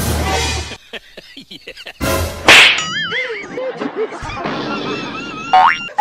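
Cartoon comedy sound effects: two loud noisy bursts, then warbling wavy tones about three seconds in, and a quick rising whistle shortly before the end.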